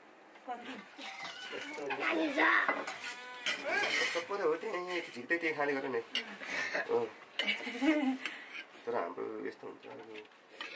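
Children's voices talking and calling out, with a metal spoon clinking against a steel bowl.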